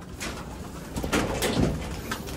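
Domestic pigeon cooing low, strongest about a second in, with a few light knocks and rustles.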